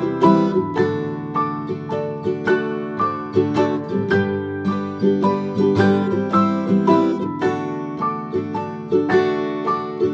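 Instrumental lullaby music: a plucked-string melody over a soft, sustained accompaniment, with no singing.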